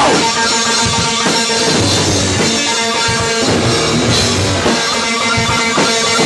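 Live hardcore band playing loud, with distorted guitar, bass and drum kit.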